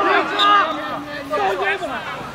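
Several men's voices shouting and cheering together on a football pitch in celebration of a goal, overlapping, with one long held shout about half a second in.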